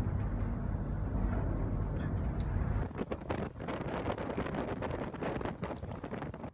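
FPB 78 motor yacht running fast downwind in heavy seas: a steady low engine and hull rumble from inside the pilothouse, then about three seconds in a change to rushing wind and churning wake water, with gusts buffeting the microphone.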